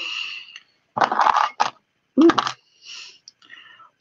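Jewellery being handled on a table in short bursts of rustling and light knocking, with a brief murmured vocal sound a little over two seconds in.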